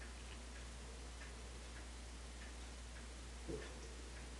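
Quiet room with faint, regular ticking over a low steady hum, and a soft thud about three and a half seconds in.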